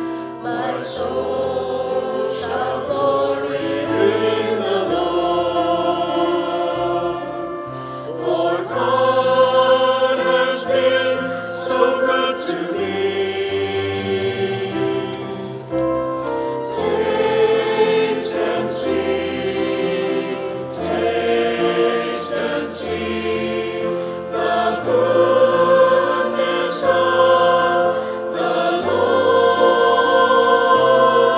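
Choir singing a hymn with keyboard accompaniment, sustained chords over a slowly stepping bass line.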